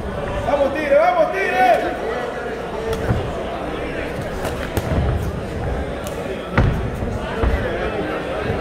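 Dull thuds of punches exchanged in a boxing ring, four or so spread over the second half, the sharpest a little before the end. Early on, a voice shouts from ringside.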